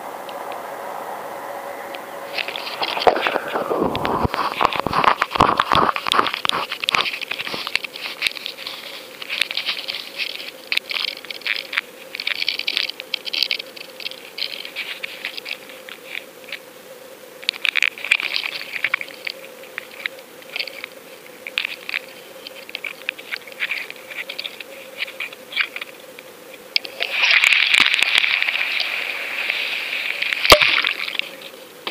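Crackling and scraping handling noise on a Go Fish Cam's own microphone as the camera and its rig are moved about, coming in irregular spells with a louder, denser spell near the end, over a faint steady hum.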